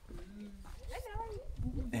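People's voices, with short drawn-out sounds that waver in pitch.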